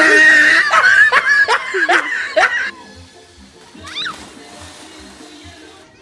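A loud rush of splashing water with high, falling squeals, cut off abruptly a little under three seconds in. After the cut, faint music with a soft beat about twice a second.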